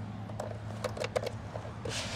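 A key being fitted and turned in an e-bike's rear battery lock, making a handful of small, sharp clicks and rattles. A steady low hum runs underneath.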